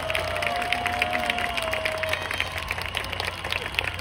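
A large crowd applauding, a dense patter of many hands clapping that slowly eases off. A single held note sounds over it and fades out about two seconds in.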